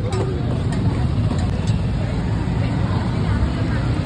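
Busy street background: a steady low rumble of traffic with indistinct voices of people talking nearby.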